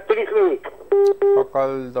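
Voice on a telephone line, broken about a second in by two short, identical, steady telephone beeps in quick succession.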